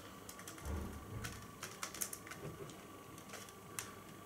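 Faint, irregular clicks of laptop keyboard keys being typed, with a couple of soft bumps from the laptop being handled about a second in.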